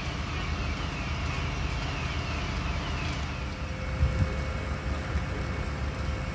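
Fire engines running at a building fire, a steady low rumble. A short falling chirp repeats about twice a second until about three seconds in, and there is a thump about four seconds in.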